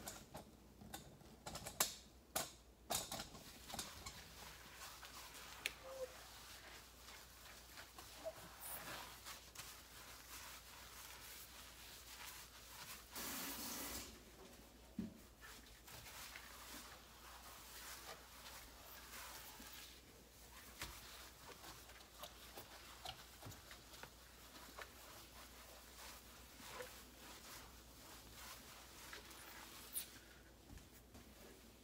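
Sponge wiping a glass-ceramic stovetop: faint rubbing with small scratchy clicks and taps, sharper and more frequent in the first few seconds, and a rush lasting about a second near the middle.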